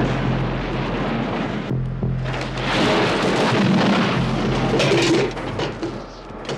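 Film soundtrack explosion: a loud blast that rumbles on, swelling again about two seconds in, over score music with steady low tones.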